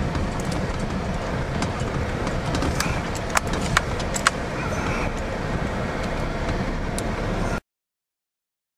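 Steady rumble of a vehicle driving over a potholed, broken gravel road, heard from inside the cab, with a few sharp knocks a little past the middle. The sound cuts off suddenly near the end.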